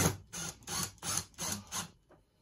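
Bosch cordless drill driver driving a screw into the refrigerator's back panel in short trigger pulses, about three a second, stopping near the end.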